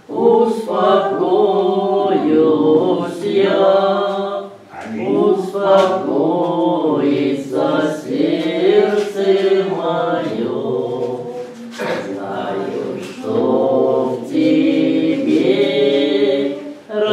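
A group of voices sings an unaccompanied liturgical chant in sustained phrases with short breaks between them.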